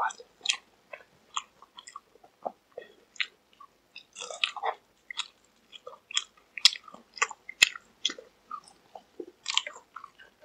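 Close-miked chewing of crispy McDonald's fried chicken: irregular small crunches and wet mouth sounds, with two sharp clicks about a second apart past the middle.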